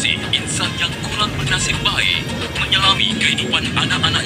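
A radio broadcast with a voice and music playing inside a city bus, over the steady low running and road noise of the bus.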